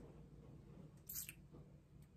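Near silence: room tone, with one brief faint click about a second in.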